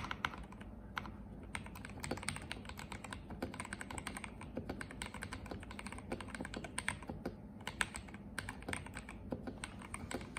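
Continuous fast typing on a KBD67 Lite R2 mechanical keyboard fitted with factory-lubed KTT Red Wine linear switches (POM stems, polycarbonate housings) and NJ80 keycaps, a dense, uneven run of several keystrokes a second.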